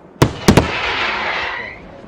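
Daytime display fireworks: three sharp shell bursts, the last two almost together, followed by a dense crackling hiss that dies away over about a second.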